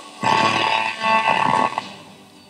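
A small radio built into a wooden tabletop scanning for stations, worked by a finger moving through water on the wood as a touchpad: a burst of garbled broadcast sound and tones lasting about a second and a half, then dropping away.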